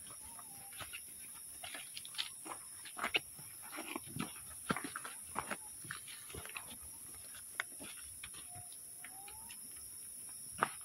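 Footsteps crunching and shuffling on dry leaf litter on a steep slope, irregular and busiest through the middle, over a steady high-pitched drone of forest insects.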